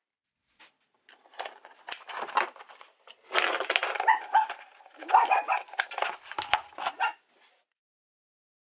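Plastic scraping, creaking and sharp clicks from handling a respirator's particulate filter cartridge: a cap is pressed onto the filter, then the filter is worked onto the powered respirator's housing, with a few short squeaks along the way.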